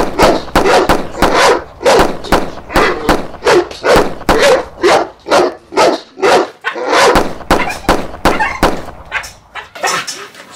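A pit bull-type dog barking over and over, about two barks a second, the barks growing fainter near the end.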